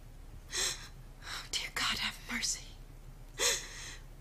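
A woman sobbing with sharp, gasping breaths, about five in a row, the loudest near the end.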